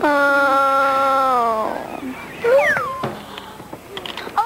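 A child's voice holding one long, level note for about a second and a half that sags at the end, then a short high squeal sliding down in pitch.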